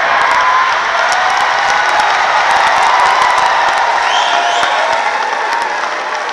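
Live comedy audience laughing, cheering and clapping. A single shout rises above the crowd about four seconds in, and the noise eases slightly toward the end.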